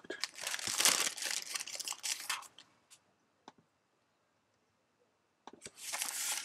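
Clear cellophane bag crinkling as a model kit's decal sheet is slid out of it, in two spells: the first couple of seconds and again near the end, with a quiet gap and a single faint click between.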